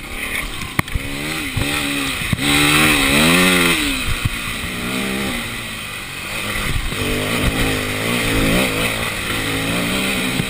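Dirt bike engine revving up and down repeatedly as the rider works the throttle along a rough track, with a few sharp knocks from the bumps.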